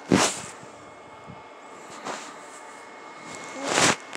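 A toddler breathing and sucking noisily on her fist, close to the microphone: three short breathy bursts, a loud one at the start, a faint one midway and another loud one just before the end.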